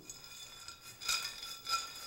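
Cashews being dry-toasted and tossed in a stainless steel skillet: the nuts rattle and slide on the metal, with a faint high ringing, growing louder about a second in.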